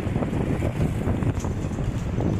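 Steady wind rushing over the microphone together with road noise from a moving bus, heard from a seat by the window.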